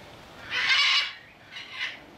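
Parrots squawking: one loud call about half a second in, then a shorter, fainter one near the end.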